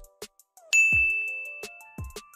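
A single bright, high chime rings out suddenly under a second in and fades slowly, over soft background music with a light beat.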